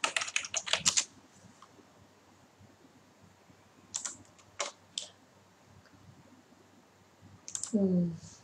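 Computer keyboard typing: a quick run of keystrokes in the first second, then a few separate key clicks about four to five seconds in. A short spoken 'ừ' comes near the end.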